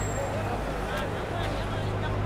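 Street field recording: several people's voices talking over a steady low engine hum from vehicles.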